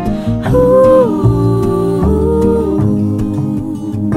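Soft acoustic song: a woman's voice hums two long wordless notes, each sliding down at its end, over gently plucked acoustic guitar and bass.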